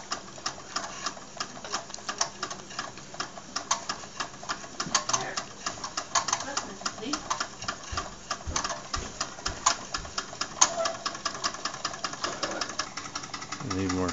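Wilesco D10 toy steam engine running under steam, its piston driving the flywheel with a rapid, slightly irregular clicking chatter.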